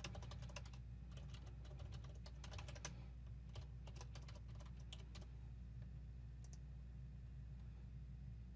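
Faint computer keyboard typing: a quick run of keystrokes entering an email address and password, stopping about five seconds in, with a couple of last key presses shortly after.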